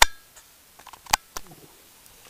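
A few sharp handling clicks and knocks. The loudest comes at the very start with a brief ringing tone, a second comes about a second later, and a smaller one follows just after it.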